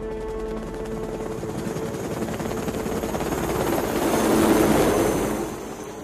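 Film soundtrack: a loud, rhythmically pulsing mechanical noise, like a vehicle passing close by, swells to a peak about four and a half seconds in and then eases, over faint sustained musical tones. It cuts off abruptly at the end.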